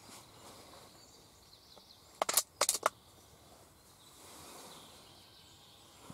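Faint outdoor background with a quick run of four or five sharp clicks a little over two seconds in.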